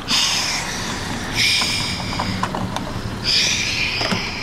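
A car's plastic fuel filler cap being unscrewed by hand from the filler neck: three short bursts of scraping noise as the cap is turned.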